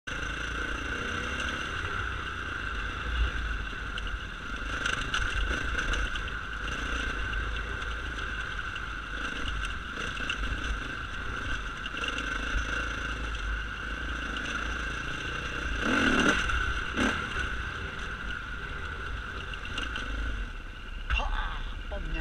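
A camera drone's propellers whining at a steady pitch throughout, over low wind rumble, with a brief louder swell about sixteen seconds in.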